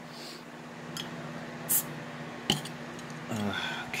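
A glass soda bottle's crown cap being pried off with a bottle opener: a light click, a brief hiss of escaping carbonation, then a sharp metallic clink.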